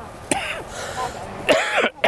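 A person's voice: two short, breathy vocal sounds, one about a third of a second in and a louder one about a second and a half in.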